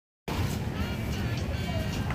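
Steady low rumble of background road traffic with faint voices, beginning a moment in.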